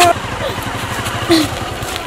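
Motorcycle engine running steadily as the bike rides along, a continuous rumble with a rapid low pulsing.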